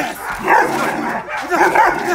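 Leashed German Shepherd security dog barking repeatedly, several sharp barks in quick succession.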